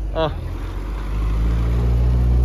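Mitsubishi Lancer Evolution VII's turbocharged four-cylinder engine running at low revs as the car rolls up close, a steady low drone that grows louder about halfway in.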